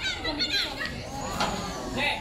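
Several young girls' voices calling and chattering over one another, with a sharp knock about one and a half seconds in.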